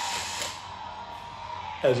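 Motor of a power-retractable toy lightsaber whirring as its telescoping plastic blade extends. It is loudest for the first half-second, then goes on more quietly.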